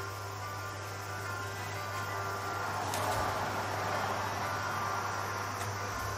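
Steady electrical hum under room noise. From about three seconds in there is a rustle of clothing with a click, as a person moves right up against the camera.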